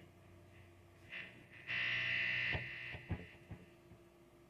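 Electric guitar rig making noise over a steady amplifier hum: a short buzz about a second in, then a louder buzz lasting about a second, followed by three sharp clicks.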